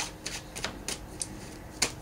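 A deck of tarot cards being handled and shuffled: a handful of short, sharp card snaps at irregular intervals.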